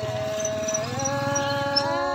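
A voice singing a long held note in a Vietnamese folk exchange song, stepping up to a higher note about a second in and holding it.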